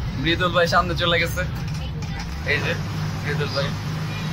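A bus's engine running steadily at road speed, heard from inside the moving bus as a continuous low drone with road noise. Voices are heard over it in the first second or so and again past the halfway mark.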